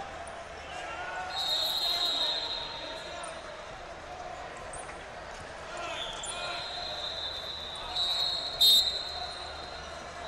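Referee's whistles blowing in a wrestling hall: a held whistle tone about a second and a half in, another from about six seconds, and a short loud blast near the end. Voices and mat thuds from the hall carry on underneath.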